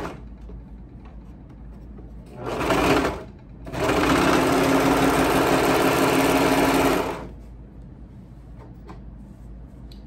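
Serger (overlock sewing machine) running twice: a short run of about a second, about two and a half seconds in, then a steady run of about three and a half seconds before it stops.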